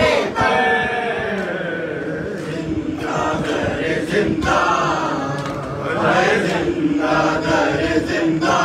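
A noha, an Urdu lament, chanted by several voices together with a slow rising and falling melody. Sharp strikes land roughly once a second throughout, in keeping with matam, hands beating on the chest in time with the recitation.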